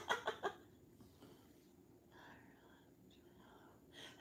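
A woman's soft laughter trailing off in a few short breathy bursts in the first half-second, then a faint whispered murmur and breathing about two seconds in, in a quiet small room.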